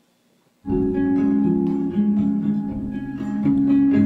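A recorded musical-theatre song starts about half a second in, with guitar playing sustained chords.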